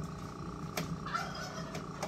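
Portable bucket milking machine running during milking, a steady mechanical hum with a couple of faint clicks.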